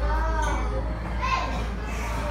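Children's voices talking and calling out in a classroom, over a steady low hum.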